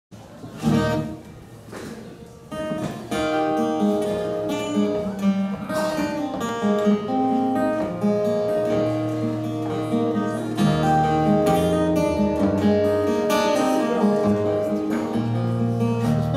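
Acoustic guitar playing the instrumental introduction to a folk song: one chord struck about a second in, then a steady run of picked notes from about three seconds in, with lower bass notes joining in the second half.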